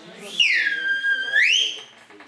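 Chalk squealing on a blackboard: a high squeal that drops in pitch, holds steady, then rises again before stopping, about a second and a half long.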